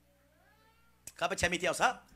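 A man's voice amplified through a microphone and PA, making a short vocal outburst of about a second, starting about a second in, with its pitch swooping up and down.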